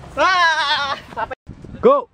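A person's loud, quavering, bleat-like cry lasting under a second, its pitch wobbling quickly. After an abrupt cut, a shorter rising-and-falling shout comes near the end.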